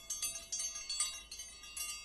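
Bell-chime sound effect of a subscribe-button animation: a cluster of high ringing chime tones, struck again several times and fading out near the end.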